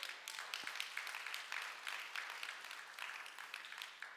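Congregation applauding, a steady patter of many hands clapping that thins out and fades near the end.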